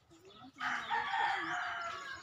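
A rooster crowing: one drawn-out crow that starts about half a second in and fades near the end.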